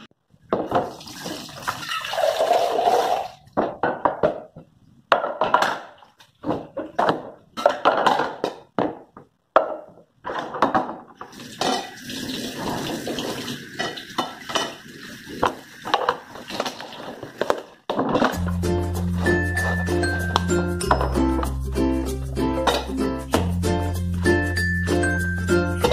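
Dishes being washed by hand at a kitchen sink: tap water running and splashing, with irregular knocks and clinks of pans and dishes. About eighteen seconds in, background music starts and continues.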